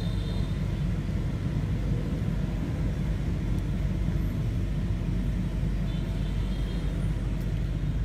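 Steady low rumbling background noise with no clear events in it.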